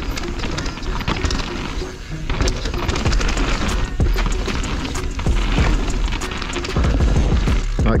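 2021 Propain Spindrift full-suspension mountain bike ridden fast down a dirt flow trail: a steady low rush of tyres on loose dirt and wind on the camera mic, with many sharp rattles and knocks from the bike over bumps.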